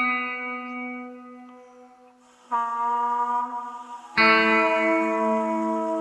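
Guitar notes ringing and fading: one rings out from the start, a new note is struck about two and a half seconds in, and a louder one about four seconds in that is held.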